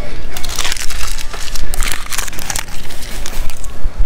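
Loud, irregular rustling and crinkling close to the microphone, with faint voices behind it.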